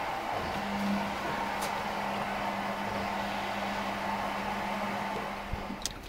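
A steady mechanical hum with one constant low tone, which stops abruptly just before the end.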